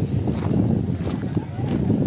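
Outdoor beach ambience: wind buffeting the microphone, with indistinct voices of people nearby.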